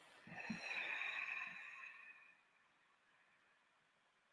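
A woman exhaling slowly through her mouth, one long breathy out-breath of about two seconds that fades away, followed by near silence.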